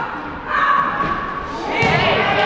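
Players' voices calling out in an echoing gymnasium during a netball game, with a dull thud on the wooden court near the end.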